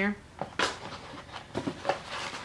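Paper coupons and sample packets rustling as they are handled, in a few short, irregular rustles.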